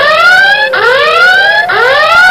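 Car anti-theft alarm siren sounding a rising whoop about once a second, three times over, warning that the vehicle is being broken into.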